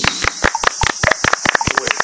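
Three people clapping their hands, a quick and uneven run of claps.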